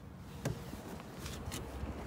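Faint shuffling and light clicks of someone moving out of a car's back seat, with one small knock about half a second in, as the rear door of the car is swung.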